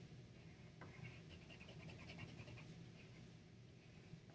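Faint scratching of a white pencil on black paper: quick, repeated strokes as stripes are drawn in, starting about a second in.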